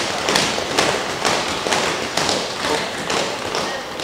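Members of parliament applauding in welcome: a crowd's dense, irregular claps and thumps, tapering off slightly near the end.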